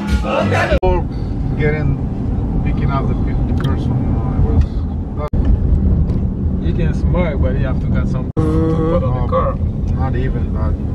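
Party music for the first second, then the low rumble of a moving car heard from inside the cabin, with voices talking over it. The sound breaks off sharply for an instant three times.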